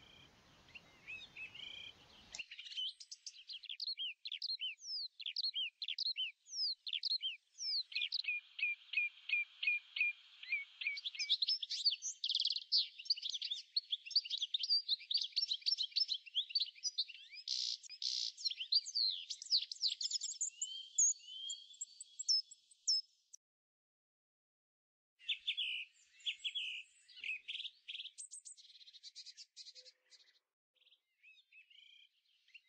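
Songbirds singing: a dense run of quick, high chirps, sweeping whistled notes and trills, which drops out to silence for about two seconds late on and then starts again.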